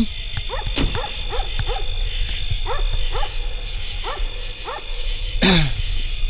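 A dog barking repeatedly, about two to three short barks a second with a brief pause partway through, over a steady chorus of crickets.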